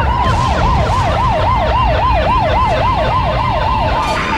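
A fast siren wailing up and down about three times a second over a low bass rumble, used as a sound effect in the intro of a hip-hop track.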